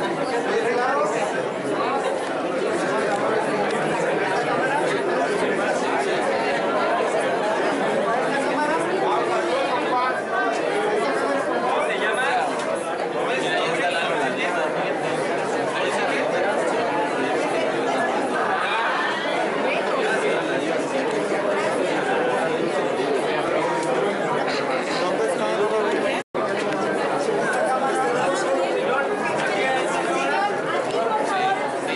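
Steady hubbub of a crowd, many people talking at once with no single voice standing out. It is broken once by a split-second dropout near the end.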